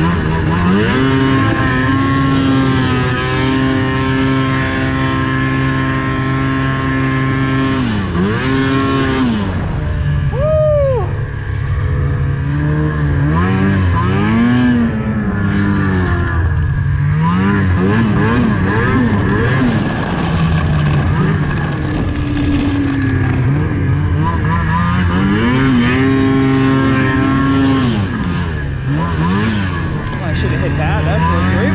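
Snowmobile engine running under load as the sled rides across snow, holding steady revs for several seconds at a time, then dropping off and picking up again several times.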